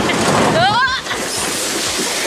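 Log flume boat running through its water channel: steady rushing water and wind on the microphone, with one rising cry from a rider about half a second in.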